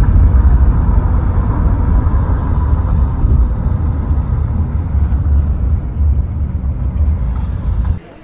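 Steady low rumble of road and engine noise heard from inside a moving taxi.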